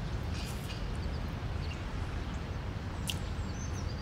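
Outdoor ambience: a steady low rumble, with faint high bird chirps near the end.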